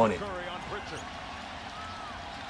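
Basketball game broadcast audio: an arena crowd's steady background noise, a basketball being dribbled on the court and faint commentator speech.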